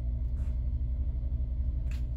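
Steady low background rumble, with one faint brief rustle about half a second in.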